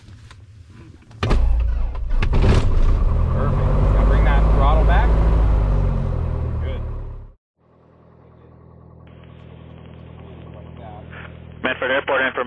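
A 1967 Piper Cherokee 180's four-cylinder Lycoming engine starts on the electric starter about a second in and settles into a loud, steady running rumble. A few seconds later that sound cuts off abruptly, and a quieter, muffled engine hum follows and slowly grows louder.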